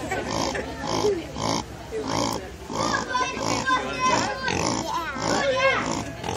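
Pig grunting in a steady rhythm, about two short grunts a second, as its belly is rubbed: the sound the title calls the pig laughing. People laugh over it in the second half.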